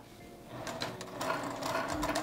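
Juki TL-2010Q straight-stitch sewing machine running, topstitching along the edge of a fabric strap. It starts up about half a second in and runs as a steady rapid stitching that grows louder.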